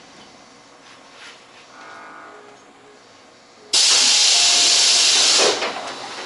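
A Tobu 8000 series electric train standing at a station lets out a sudden loud blast of hissing compressed air from its pneumatic system. The hiss lasts about two seconds and then tails off. It starts after a few quiet seconds of the train at rest.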